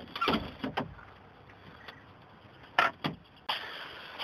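A few sharp snaps and knocks as the plastic interior door panel and handle of a Chevy Silverado are pried apart with a screwdriver: a couple near the start and two more about three seconds in. A steady hiss comes in near the end.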